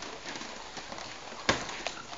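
Steady background noise with one sharp knock about one and a half seconds in and a lighter click shortly after.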